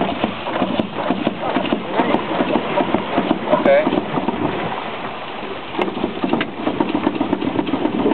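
Two-cylinder high-low expansion (compound) steam engine of a small steamboat running with a rapid, even mechanical beat. It quietens briefly about five seconds in, then picks up again.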